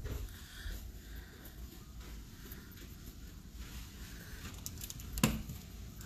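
Faint indoor room noise with low, uneven rumbling from a handheld phone being moved, and a single sharp click or knock a little after five seconds.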